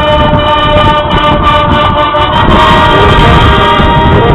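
High school marching band's brass playing loud held chords that change a couple of times, with drums and percussion underneath.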